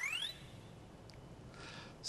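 End of an electronic, video-game-style jingle: a rising synth sweep that ends about a third of a second in, followed by faint room tone.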